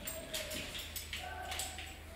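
A cat's paws and claws tapping and skittering on a tile floor as it pounces about, a few quick clicks in a row.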